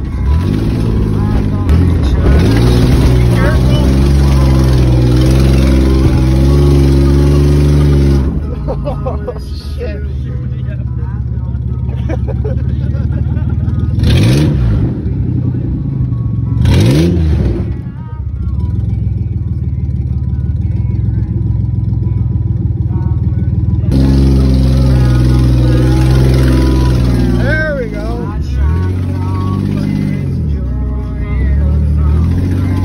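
Ford Bronco II's V6 running with no exhaust system, heard from inside the cab while driving. It runs hard and steady at first, drops back through the middle with the revs rising and falling twice, then pulls hard again near the end.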